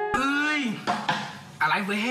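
A man's voice delivering a drawn-out vocal line with the backing beat dropped out, then a second line starting near the end.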